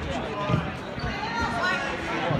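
Wrestlers' bodies thudding onto the gym's wrestling mat during a takedown, one low thump about half a second in, with spectators shouting.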